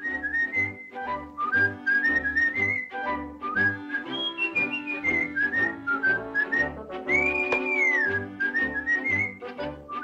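Cartoon soundtrack of a jaunty whistled tune over a light orchestral accompaniment with a steady bass beat. The whistled melody steps up and down in short notes, and about seven seconds in one long note swoops up and falls back.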